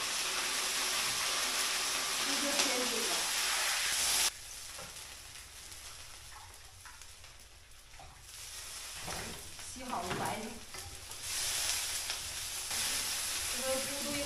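Food sizzling in a large wok as Napa cabbage is added to stewing fish: a loud steady hiss that cuts off abruptly about four seconds in, then quieter, with the sizzling back near the end.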